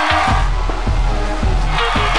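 Live band music with a steady beat and repeating held notes.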